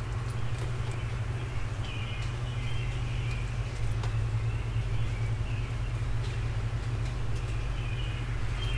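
Songbirds singing short warbled phrases, with a pause between each, over a steady low rumble of distant traffic. Scattered faint ticks run through it.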